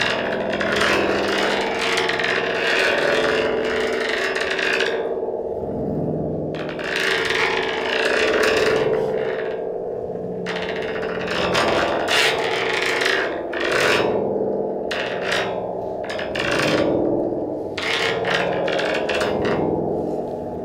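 A stick scraped along the coiled metal rod of a Baschet sound sculpture, the cone giving out a loud rasping sound. Long strokes come first; in the second half they turn into shorter, quicker strokes with gaps between. A steady ringing drone of several pitches runs underneath.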